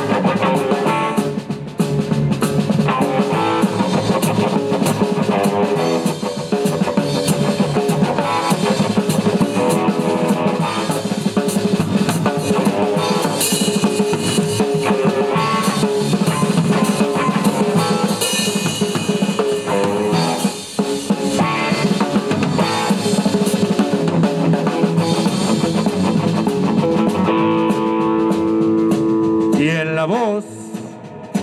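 A swing band playing live with the drum kit to the fore, drums and cymbals over the band's other instruments. Near the end a long note is held.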